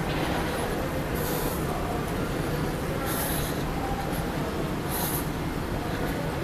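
Steady rumble of a moving walkway and airport concourse ambience, with a short high hiss that comes back about every two seconds.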